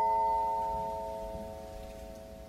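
A hanging plate chime, struck once with a mallet, ringing out: several steady tones together, fading slowly.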